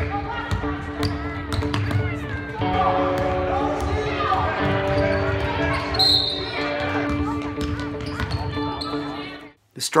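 A basketball bouncing on a gym floor, with voices of players and spectators during a game, under background music with long held notes.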